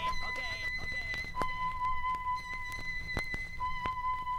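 A steady high-pitched musical tone is held, its lowest note dropping out and returning, with a few sharp clicks.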